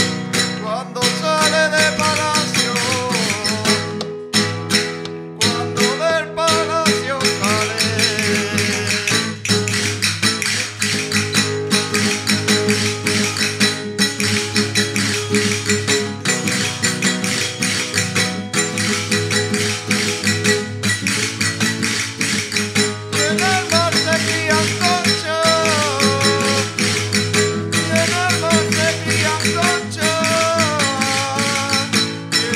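Live chacarra folk music: an acoustic guitar strummed in a steady rhythm with frame drums and tambourines beaten along, and voices singing a verse in several stretches.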